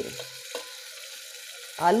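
Hot oil sizzling steadily in a pressure cooker as chopped onion, tomato and green chilli go in on top of frying cumin, mustard seeds and potato, with one light tap about half a second in.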